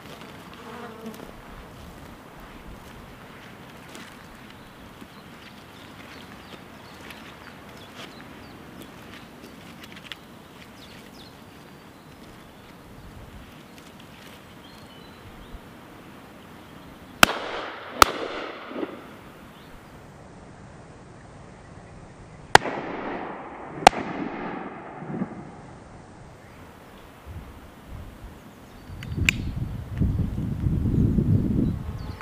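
Four shotgun shots in two pairs, each shot followed by a rolling echo. The first two come about two-thirds of a second apart, a little past the middle; the second two come about a second and a quarter apart, some five seconds later. The pairs fit the two barrels of a double-barrelled shotgun.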